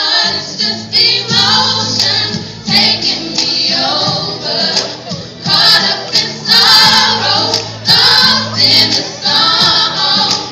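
A choir singing in parts, loud, in phrases with short breaks between.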